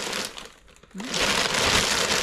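Thin plastic bag crinkling as hands rummage in it and lift it. There is a short rustle at first, then a dense, continuous crinkling from about a second in.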